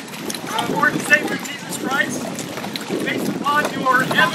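Men's voices talking, with wind buffeting the microphone.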